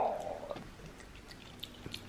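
Black-capped capuchin monkey eating canned sardine off a spoon: faint, scattered wet chewing and lip-smacking clicks.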